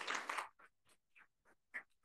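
A short burst of applause that cuts off about half a second in, followed by scattered faint clicks and rustles.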